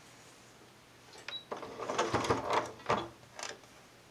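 A sewing machine with a walking foot stitching in short, irregular stop-start bursts mixed with clicks, from about a second in until past three seconds, as when backstitching at the start of a topstitched seam.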